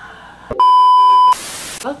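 A loud single-pitch censor bleep lasting under a second, cut straight into a half-second burst of hiss like TV static, with a woman's sigh just after.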